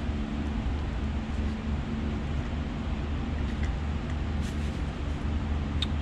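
Steady low hum and hiss of shop background noise, with a few faint metal clicks as a roll pin is pressed into the power steering control valve sleeve.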